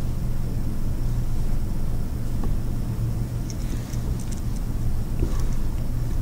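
Steady low hum of room background noise, with a few faint light clicks about halfway through.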